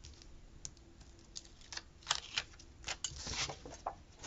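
Sticker paper and metal tweezers handled on a desk: a scatter of light irregular clicks and taps, with a short paper rustle a little after three seconds in.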